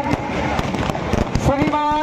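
Fireworks going off, a dense run of sharp cracks and bangs. About a second and a half in, a voice comes in with a long drawn-out note over the bangs.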